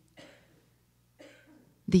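Two faint, short coughs about a second apart, the first just after the start.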